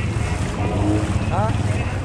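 ATV engine running steadily while the quad wades through shallow flood water, with water splashing and wind rushing over the microphone.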